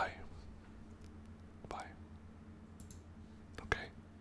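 Quiet room tone with a faint steady hum, broken twice by a softly spoken word.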